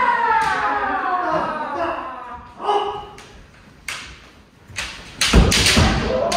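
Kendo kiai shouts in a large wooden dojo. A long shout falls in pitch over the first two seconds and a shorter shout comes near the middle. About five seconds in there is a loud thud, a practitioner's stamping footwork (fumikomi) landing on the wooden floor with a bamboo-sword strike.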